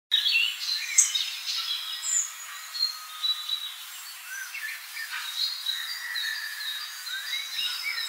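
Several small woodland songbirds calling and singing at once: overlapping short high chirps and trills, with a sharp chirp about a second in.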